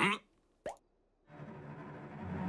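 A brief vocal squeak at the start, then after a short silence a single quick rising 'plop' cartoon sound effect; a steady hum-like sound fades in near the end.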